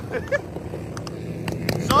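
Several small motorcycle engines running at low revs, with a few sharp clicks.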